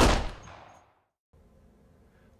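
A single gunshot sound effect: one sharp, loud shot at the start with a ringing tail that fades away over about a second. Faint room tone follows near the end.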